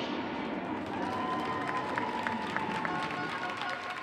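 Crowd cheering and clapping, with a few long shouts held over the applause.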